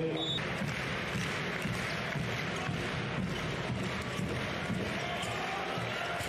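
Steady crowd noise filling an indoor handball arena, with a handball bouncing on the court now and then.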